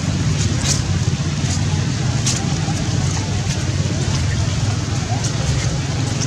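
A steady low rumble with scattered faint clicks through it.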